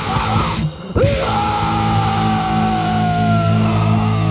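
Loud heavy rock music from a band: short choppy hits, then about a second in a long held chord with a high sustained note that slowly falls in pitch.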